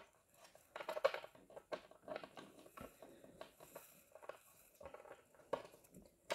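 Faint, irregular clicks and taps of small plastic toy-playset pieces being handled and pushed against the holes they are meant to pop into.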